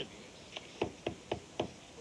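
Several knocks on a door over about a second.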